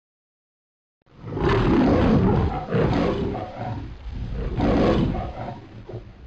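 A lion roaring twice: a long roar starting about a second in, then a second one that fades out near the end. It is a studio-logo style sound effect.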